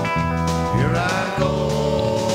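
Live rock band playing an instrumental passage: electric guitars, bass guitar and drum kit, with a note bending in pitch about halfway through.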